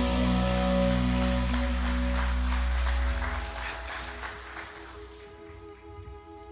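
A live band's closing chord ringing out, with bass and low end dropping away about three seconds in, leaving a soft sustained keyboard pad.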